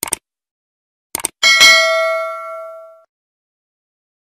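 Subscribe-button animation sound effects: quick mouse-click sounds at the start and again about a second in, then a bright bell ding that rings out and fades over about a second and a half.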